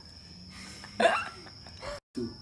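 Crickets trilling steadily in the background, with one sudden short burst of a person's laughter about a second in.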